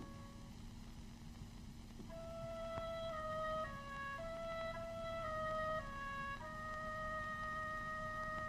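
Soft film-score melody on a flute-like wind instrument, starting about two seconds in: a short falling three-note figure played twice, then a long held note.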